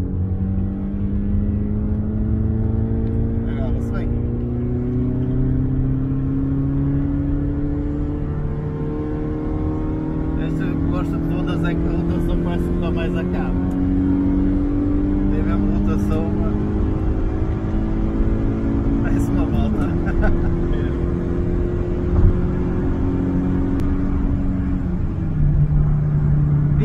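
1989 Honda Civic 1.4 dual-carburettor engine heard from inside the cabin on the move, over steady road rumble. Its note climbs slowly and drops back four times, as at upshifts, with a single thump a little before the end.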